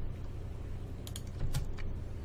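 A few light clicks of computer keys being pressed, mostly in a cluster from about a second in, over a steady low electrical hum.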